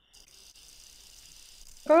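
Graphite pencil drawing a long, light line across paper on a clipboard: a faint, steady scratching hiss lasting about a second and a half.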